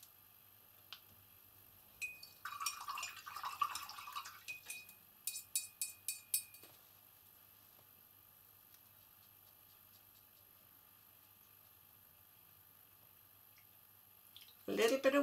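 A paintbrush rattled in a glass jar of rinse water, clinking against the glass, then tapped about six times on the jar with a faint glassy ring. The clinking runs from about two seconds in to about two-thirds of a second before seven seconds; the rest is quiet room tone.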